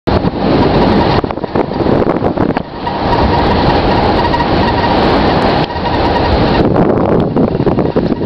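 A car driving on a gravel road: a loud, steady rumble of tyre and wind noise from the moving car, dipping briefly a couple of times.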